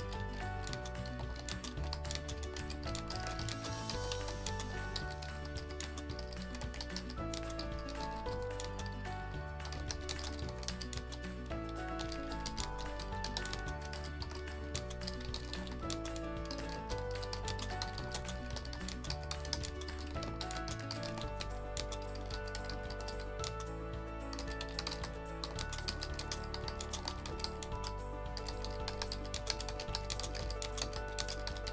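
Computer keyboard typing, a quick run of key clicks as words are typed one after another, over background music with held notes and a steady bass.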